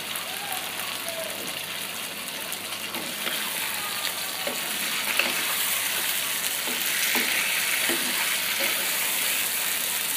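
Pangas fish curry with bean seeds and tomato sizzling in a nonstick frying pan while a wooden spatula stirs and scrapes through it. The sizzle grows a little louder through the second half.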